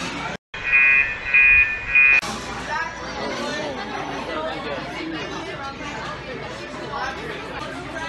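Three loud electronic beeps in quick succession, each about half a second long, right after a brief cut to silence; voices talking follow.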